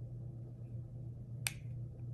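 A single sharp click about one and a half seconds in from a pair of flexible-framed sunglasses as they are handled and a temple arm is moved on its hinge. A steady low hum sits underneath.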